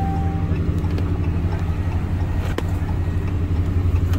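2013 Ram pickup's engine idling steadily, just started, heard from inside the cab. A steady high tone stops about half a second in.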